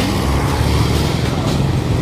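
A motor vehicle engine running with a steady low hum, amid street traffic noise.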